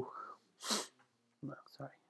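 A man's voice trails off, then a short sharp breath noise comes out about two thirds of a second in, followed by two brief clipped syllables of speech.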